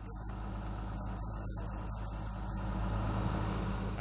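A crane truck's engine running steadily at idle, a low even hum.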